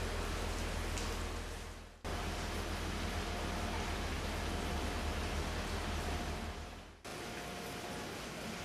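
Steady hiss of rain with a low rumble underneath, dipping out briefly twice.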